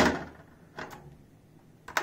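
Wire frying basket set down into an aluminium deep frying pan: a sharp metallic clank at the start that rings away, then a faint knock about a second in and another click near the end.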